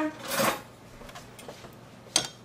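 A metal utensil briefly scraping and clinking against glass bowls about half a second in, followed by a few faint light clicks.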